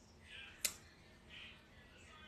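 Quiet room with a single short, sharp click just over half a second in, and two faint soft sounds either side of it.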